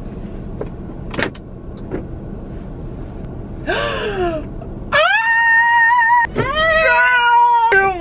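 Two girls' voices letting out long, loud, high-pitched squeals in a car cabin, starting about five seconds in and held to the end, two pitches at once for part of it. Before that there is a steady low hum with a single click about a second in.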